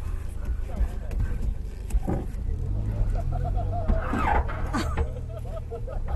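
Suzuki Jimny engine running at low revs, heard from on board, with a few sharp knocks and voices over it.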